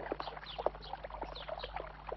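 Faint birds chirping: short, downward-sliding high chirps repeated every few tenths of a second.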